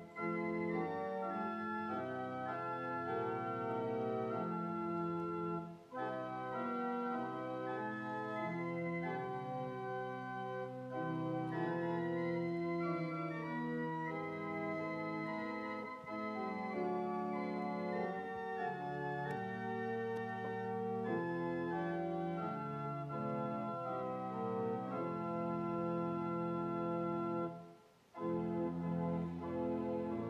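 Church organ playing a hymn tune in sustained chords, with short breaks between phrases about six seconds in and a couple of seconds before the end.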